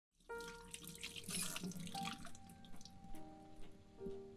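Tap water running and splashing into a stainless-steel sink as hands are rinsed under it, loudest in the first two seconds and then easing off. Soft piano music plays underneath.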